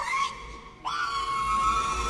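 A cartoon character's squeaky, high-pitched voice on the film soundtrack: a short cry, then, about a second in, a long shriek held on one high pitch.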